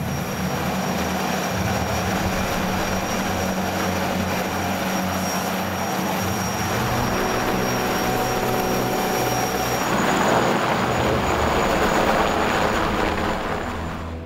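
Helicopter engine and rotor running steadily, rising a little in level about ten seconds in.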